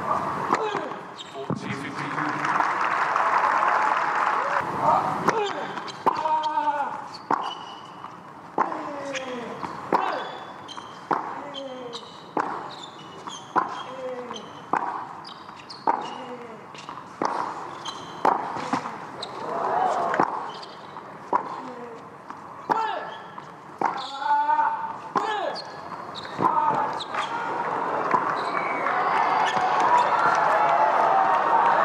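Tennis rally on a hard court: racket strikes on the ball about every second and a half, many followed by a player's short grunt falling in pitch. Crowd noise at the start, then applause and cheering swelling near the end as the point finishes.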